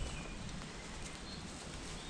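Woodland outdoor ambience: a steady background hiss with a few short, faint bird calls.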